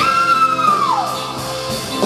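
Live band playing, with a high held note that slides downward about a second in.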